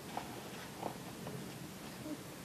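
A few faint footsteps on the ground, three soft taps over a steady hiss.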